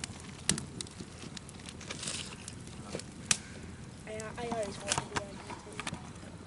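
Wood campfire of split logs crackling, with sharp pops scattered throughout, the loudest a little over three seconds in. Faint voices are heard about four seconds in.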